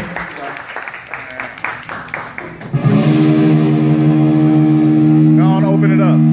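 Room chatter and scattered claps, then about three seconds in a live band comes in loud with a held chord on electric guitar and bass guitar, a wavering higher note joining near the end.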